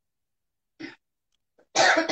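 Dead silence, then a brief faint sound a little under a second in, and a loud person's cough near the end.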